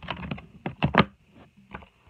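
Handling noise from a paper movie-cover booklet moved about close to the microphone: a quick flurry of rustling clicks, then a few sharper taps about a second in.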